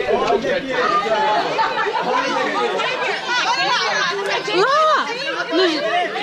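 Overlapping chatter of many people talking at once, children's high voices among adults'.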